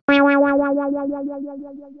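A single electronic keyboard note, likely synthesizer or electric piano, struck and held. It pulses fast, about eight times a second, and fades over two seconds before cutting off suddenly: a short musical sting.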